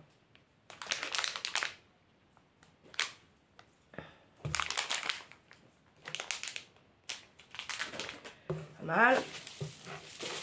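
Food packaging crinkling as it is handled, in several short bursts with brief pauses between.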